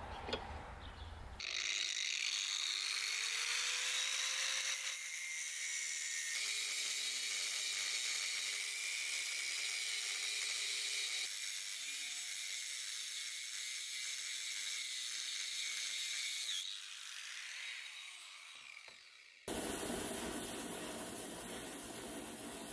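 Angle grinder with a thin abrasive cut-off disc cutting into a rusty steel ball-bearing race: a loud, high-pitched grinding screech that starts about a second and a half in and runs for some fifteen seconds. It then fades and winds down, and a steady hiss cuts in abruptly near the end.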